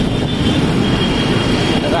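Busy street traffic: motor vehicles running in a steady, loud, low rumble, with a thin steady high tone over it.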